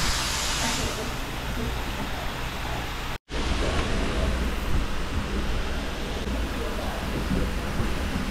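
Dog-wash station hose sprayer running at strong water pressure, a steady hiss of spraying water over a low rumble. The sound breaks off for an instant about three seconds in.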